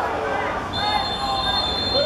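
Referee's whistle blown once, a steady shrill high tone starting a little before halfway and held for just over a second, over voices calling on the pitch.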